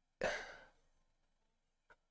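A man's single breathy sigh about a quarter second in, fading within about half a second, followed near the end by a faint click.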